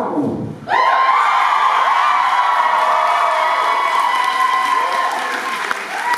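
A recorded pop song ends with a short falling sweep. Under a second in, a concert-hall audience suddenly breaks into loud cheering and applause, with long high-pitched shouts held over the clapping.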